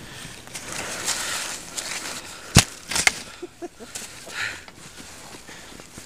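Skis hissing through deep powder snow, with two sharp knocks close together about two and a half seconds in and a short laugh after them.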